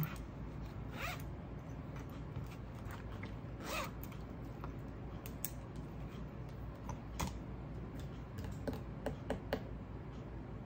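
Small handling noises: scattered light clicks and brief rustles as things are moved about by hand, with a quick run of sharper ticks near the end.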